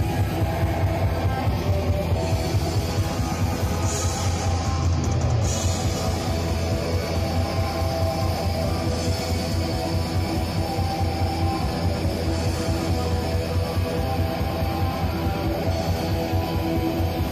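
Live black metal band playing loudly: distorted electric guitars, bass and a drum kit going without a break, with fast, dense drumming.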